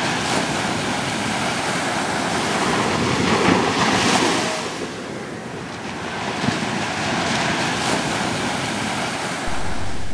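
Sea surf washing on the shore, with wind on the microphone; the surf swells about three to four seconds in and eases for a moment after.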